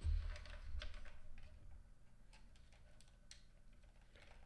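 Handling noises at a computer desk while a wired mouse is plugged in: low bumps at first, then a few sharp, scattered clicks.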